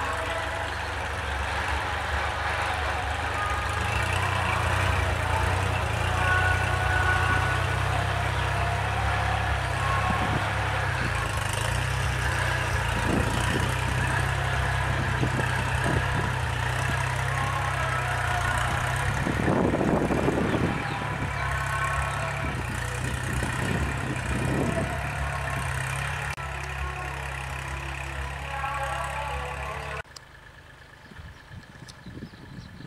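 Kubota L3608 tractor's diesel engine running steadily under load as its rear rotary tiller churns the soil. A louder, rougher patch of noise comes about two-thirds of the way in.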